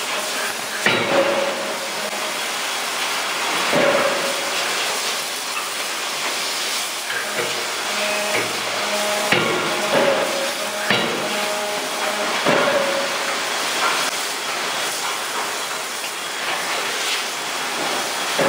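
A 2-ton hydraulic close-die forging hammer striking hot metal in the die: sharp, loud blows at irregular intervals, often in quick pairs, each leaving a short metallic ring. A steady hiss of shop noise runs underneath.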